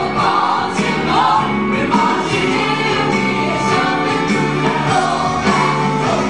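Stage musical ensemble singing together in chorus over a live band, loud and continuous.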